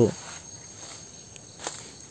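Steady high chirring of crickets or similar insects, with faint footsteps on dry leaf litter and one sharper crunch about one and a half seconds in.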